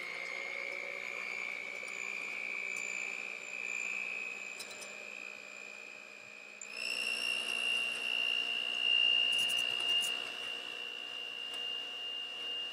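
Handheld electric mixer whipping cream in a stainless steel bowl: a steady motor whine that steps up in pitch and gets louder a little past halfway as the mixer goes to a higher speed.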